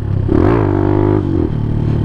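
Suzuki DR200's single-cylinder four-stroke engine revving up quickly under throttle, then holding a steady pitch for about a second before easing off, over steady riding noise.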